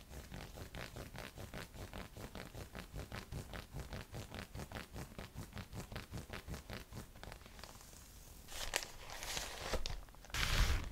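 Long nails scratching quickly back and forth over a sports bra's fabric and mesh panel, about five or six even strokes a second. Near the end the scratching stops and a plastic mailer bag rustles and crinkles, louder than the scratching.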